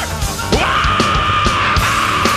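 Live heavy metal band playing, drums and distorted guitars under a singer's long held yell that starts about half a second in and holds at one pitch.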